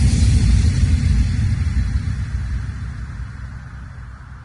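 Deep, noisy bass boom from a transition effect in a tribal DJ mix, with no beat or melody, fading away steadily over a few seconds.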